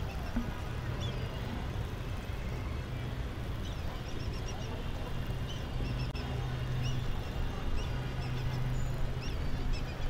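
Open-air cricket stadium ambience: a low steady hum under a general hazy background, with small birds chirping repeatedly throughout.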